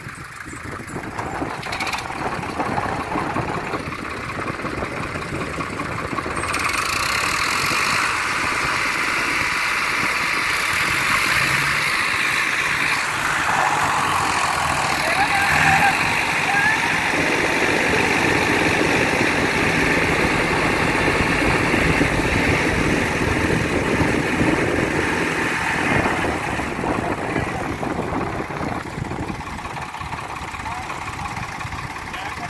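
Diesel tractor engines working hard under load while one tractor tows another out of deep mud. The revs rise sharply about six seconds in, stay high through the pull, and ease off a few seconds before the end.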